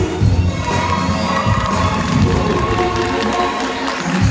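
Audience cheering and shouting over loud backing music as the gymnasts hold their pyramids.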